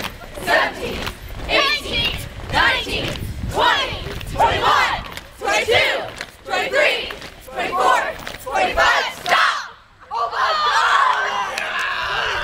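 A large group of teenagers shouting exercise counts in unison as they do jumping jacks, about one shout a second. About ten seconds in the chant stops and gives way to a crowd chattering.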